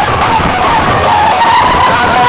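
Very loud, harsh, distorted sound from a PA system driven by a rack of power amplifiers, their output meters peaking in the red: a steady noisy wash with a wavering whine-like tone running through it.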